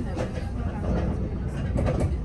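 Double-decker bus engine idling while the bus stands still, a steady low rumble heard from inside the upper deck, with a passenger talking over it.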